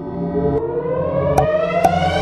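Synthesized riser: a buzzy tone climbing steadily in pitch, with two short clicks near the end.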